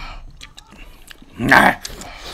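A single short, loud yelp about one and a half seconds in, over faint low clatter.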